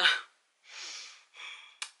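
A woman's breathy gasp, followed by a second, shorter breath, then a short sharp click near the end.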